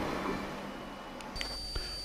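Faint background noise of a handheld recording, fading away, then a sudden switch to a different background with a steady high-pitched whine about one and a half seconds in.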